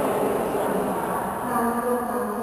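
A congregation chanting in unison, many voices blending into a drone. About one and a half seconds in, the voices settle onto a steady held pitch.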